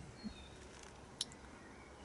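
Quiet garden background with a couple of brief, high bird chirps. The sharpest chirp comes just over a second in.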